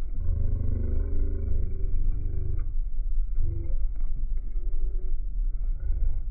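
Airliner cabin noise in flight: a steady, loud low rumble. A low, muffled pitched sound rises over it for the first couple of seconds and again briefly about three and a half seconds in.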